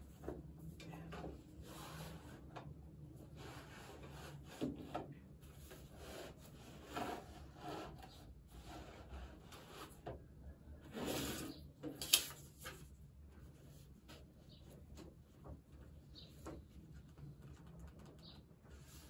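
Book pages being turned and paper rustling and rubbing under hands on a tabletop, in soft swishes every few seconds over a low steady hum. A single sharp click about twelve seconds in is the loudest sound.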